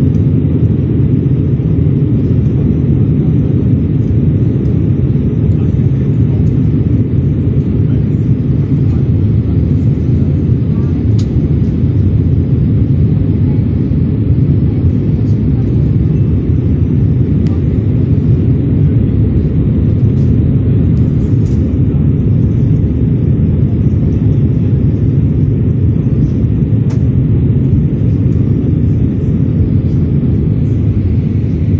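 Steady cabin noise of an easyJet Airbus jet airliner on approach, heard from a window seat: a dense, even low rumble of engines and airflow that holds level throughout.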